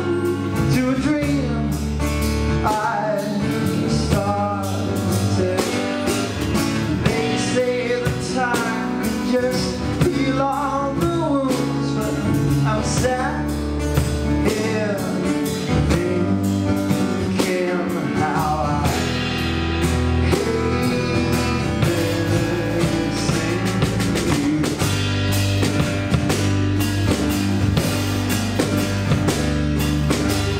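Live band playing a blues-pop song: acoustic guitar, electric guitar, electric bass and a Sonor drum kit, with a melodic line bending in pitch over the band through the first two-thirds.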